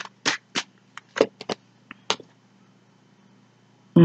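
Tarot cards being handled and drawn from the deck: a quick string of short card snaps and slides in the first two seconds or so.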